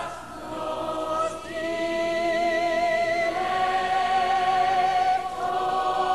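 Choir singing slow, sustained chords, the voices holding long notes that move to a new chord every second or two.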